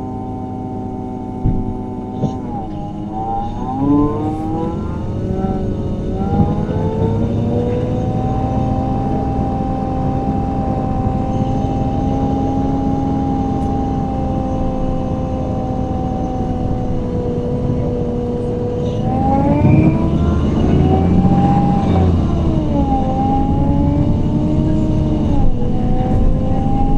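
MAN Lion's City CNG bus heard from inside the cabin: its natural-gas engine and ZF Ecolife automatic gearbox whine as it pulls away, pitch climbing in steps through the upshifts, then holding steady at cruise. A couple of knocks come just before it moves off, and near the end the whine rises and falls again as the bus changes speed.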